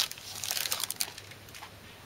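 Plastic packaging crinkling as it is handled, a run of small crackles in the first second or so, then dying away.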